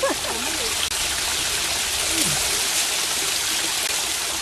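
A small waterfall splashing down a rock face into a stream pool: a steady rushing hiss of falling water.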